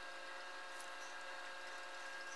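Faint steady hum with several even, steady tones and no speech: background room or equipment noise.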